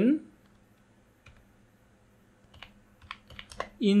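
Quiet keystrokes on a computer keyboard as a word is typed: a couple of separate key clicks, then a quicker run of taps near the end.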